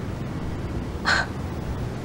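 A single short voiced 'yeah' about a second in, over a low steady rumble.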